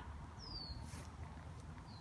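Quiet outdoor background with a low rumble, and a bird giving one short high chirp that falls in pitch about half a second in, with a fainter chirp near the end.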